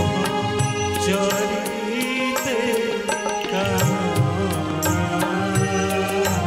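Odia devotional song, a Jagannath bhajan, sung live by a man through a microphone over instrumental accompaniment with a steady percussion beat.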